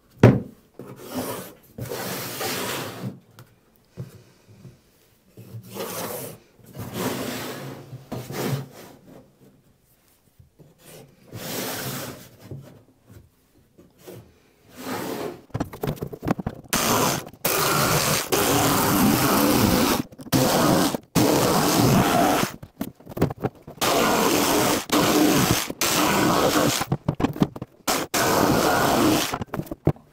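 Plywood scraping and rubbing against wood and frame as a sole panel is worked and handled. It comes in short bursts at first, then in a near-continuous run with brief breaks from about 17 seconds in.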